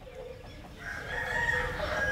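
A rooster crowing in the background, rising in level in the second half.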